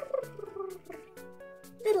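A short creature-like call that falls in pitch, cute and purring, given to the baby dragon toy, over light background music with held notes.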